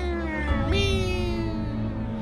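Cat meows: a drawn-out meow falling in pitch, then a second long meow that slides slowly downward, over a steady background music bed.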